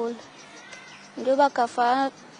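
A female voice speaking in short phrases, with a pause of about a second between them.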